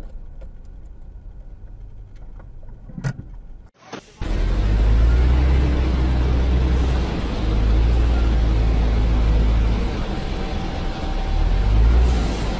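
A loaded dump truck's diesel engine runs with a loud, deep, steady rumble as the truck moves slowly across a dirt slope; this starts suddenly about 4 s in. Before that there is only a faint low road hum with a single click.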